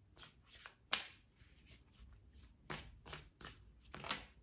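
A deck of tarot cards shuffled hand to hand: faint, irregular flicks and slides of cards, with a sharper snap about a second in.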